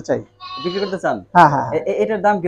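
A goat bleating once, a short wavering call about half a second in.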